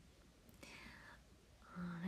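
A woman's faint breathy whisper about half a second in, then her voice starting to speak near the end.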